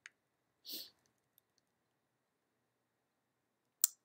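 A few scattered clicks of a computer mouse and keyboard in a quiet room, with a short soft puff of noise, like a breath, about a second in and a sharper click near the end.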